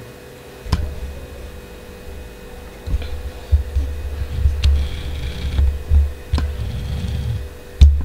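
Hand-marking on fabric spread over a wooden cutting table: irregular low thumps and rumbles from the table as the hand works, a few sharp clicks, and faint scratching of the marking stroke. A steady faint hum runs underneath.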